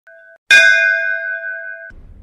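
Intro chime: a faint short tone, then a single loud bell-like strike about half a second in that rings and fades, cut off abruptly after about a second and a half.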